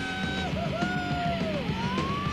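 Rock music with a long held note that bends in pitch, breaks off briefly, then slides upward near the end.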